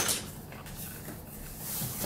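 Handling noise as a thin fabric tactical hood is rubbed and pulled off the head, a soft rustle that grows near the end. A sharp click at the very start as the airsoft helmet is handled.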